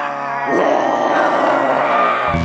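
A monster growl voiced for a dragon: a long, rough growl that starts about half a second in, over faint sustained musical notes.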